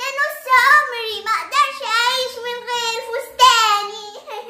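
A young girl singing in a high voice, in phrases with long, wavering held notes.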